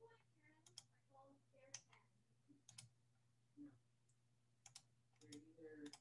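Near silence with a faint steady hum, broken by a few faint, scattered computer mouse clicks, some in quick pairs.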